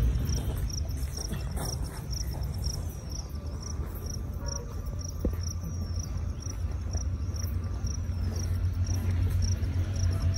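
A cricket chirping steadily, short high-pitched chirps about two a second, over a low rumble of wind or handling on the microphone.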